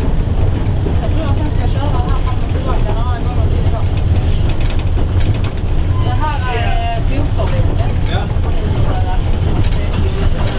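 Steady low rumble inside the cab of the steam locomotive SJ E 979, with people talking over it.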